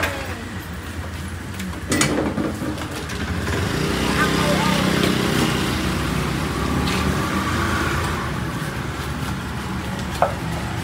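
Small motor scooter engine running and getting louder as it pulls away, with people talking over it and a couple of sharp clicks.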